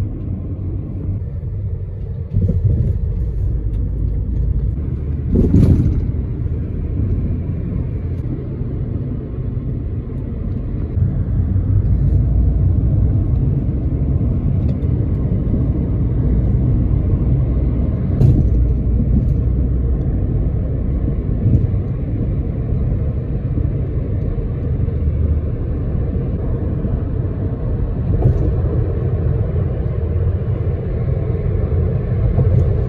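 Steady low road rumble from inside a moving road vehicle, with a few brief sharp knocks along the way.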